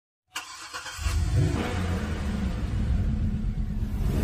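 Car engine sound effect: a sharp click about a third of a second in, then the engine starts about a second in, rises briefly in pitch, and keeps running with a deep, steady rumble.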